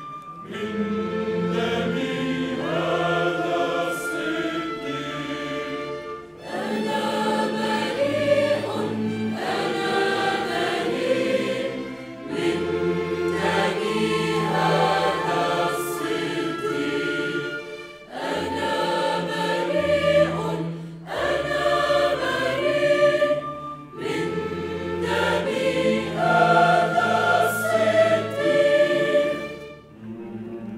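Mixed choir of men's and women's voices singing sacred music with string orchestra accompaniment, in phrases of about six seconds separated by brief breaths.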